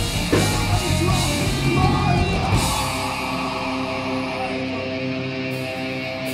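Live heavy rock band playing: distorted guitars, bass and drums at full volume. About two and a half seconds in, the drums and low end drop out, leaving held guitar chords ringing on.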